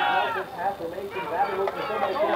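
Several voices shouting across a football field: a long drawn-out yell fades about half a second in, followed by scattered overlapping shouts.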